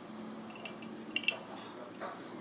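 A few light metallic clicks from a steel binder clip being handled and clipped onto a small DC hobby motor, the sharpest a little past the middle.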